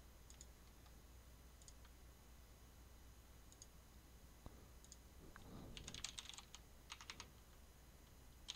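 Faint computer keyboard typing: a quick run of keystrokes about two-thirds of the way through, after a few single faint clicks, likely mouse clicks, in otherwise near silence.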